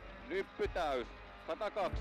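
A man's voice speaking briefly in short fragments over background music.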